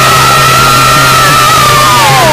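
A singer holding one long, high-pitched cry over a steady low drone; the note stays level, wavers slightly, and begins to slide downward near the end.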